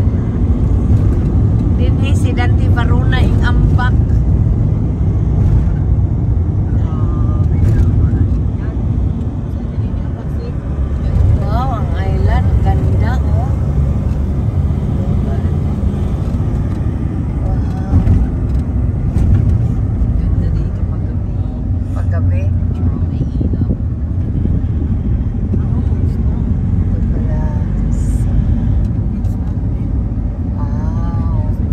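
Steady road and engine noise inside a moving van's cabin, a dense low rumble, with short snatches of voices a few times.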